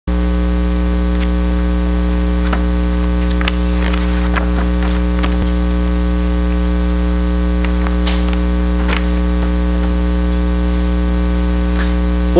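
Loud, steady electrical mains hum in the sound system's audio feed, with a few faint rustles and clicks of papers being handled at the podium microphone.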